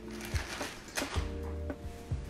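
Background music of sustained, steady notes, with a few light clicks and taps from objects being handled.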